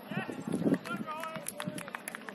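Voices of soccer players shouting across the pitch during play: several short calls overlapping, with a few sharp clicks in the second half.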